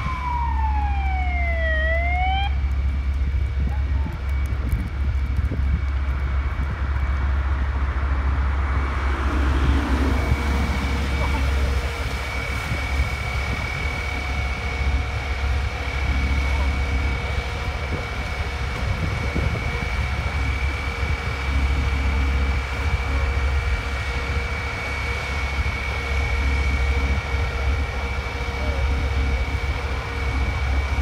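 Fire engines' diesel engines running steadily with a low drone and a steady high whine over it. About a second in, a siren sweeps down and back up once.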